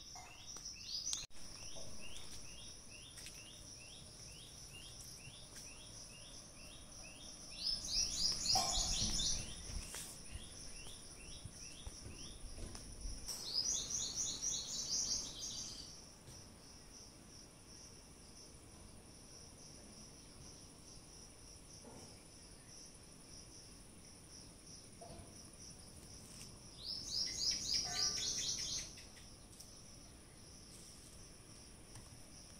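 Birds calling over a steady high insect drone: a run of short repeated chirps, about four a second, for the first several seconds, then three loud bursts of rapid chirping, one about a quarter of the way in, one around the middle and one near the end.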